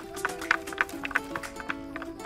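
Background music with a simple stepped melody, over many irregular sharp wooden clicks, several a second: children tapping sticks and acorns together.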